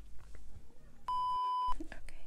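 A single steady high-pitched beep lasting about two-thirds of a second, starting about a second in: an edited-in bleep tone of the kind used to censor a word.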